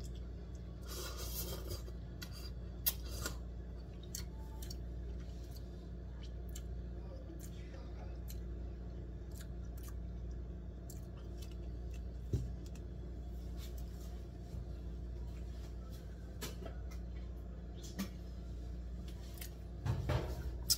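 Eating instant noodles from a cup: a short slurp about a second in, then quiet chewing and scattered light clicks and taps of a plastic fork against the cup, over a steady low hum.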